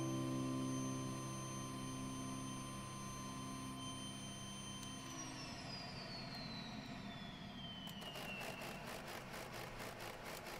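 A piano chord fades over the steady whine of a running vacuum cleaner. About halfway through, the vacuum cleaner is switched off and its motor winds down, the whine falling steadily in pitch over about four seconds. A faint even pulsing of about three beats a second follows near the end.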